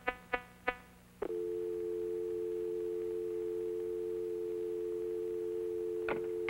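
A few fading electronic pulses that come slower and slower, then a click about a second in and a steady two-note telephone dial tone: the line has been cut off.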